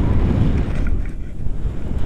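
Strong wind buffeting the microphone of an action camera in flight on a paraglider: a loud, steady, deep rumble.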